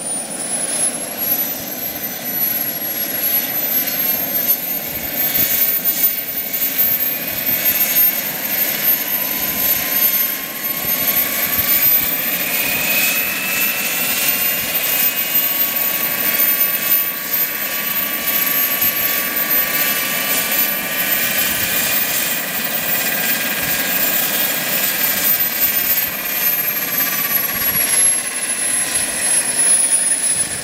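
Wren MW54 micro gas turbine in an R/C helicopter running with a high whine. The whine climbs in pitch over the first few seconds, holds high and rises further in the second half, then falls away near the end, over a steady rushing noise. The changes in turbine rpm follow the rotor pitch being applied and taken off while the throttle and pitch curves are set up.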